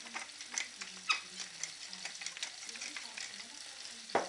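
Chunks of potato, carrot, onion, leek and celery frying in hot oil in a frying pan: a steady sizzle with irregular crackles and pops, the sharpest about a second in.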